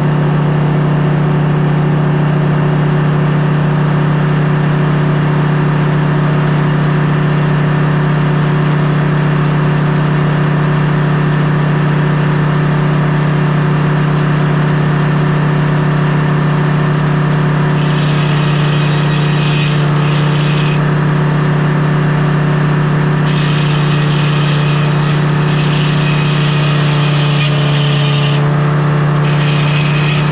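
Circular sawmill running steadily with a constant machine tone. From a little past halfway, the large circular blade cuts into the log on the carriage in several stretches of high rushing noise, with short breaks between them.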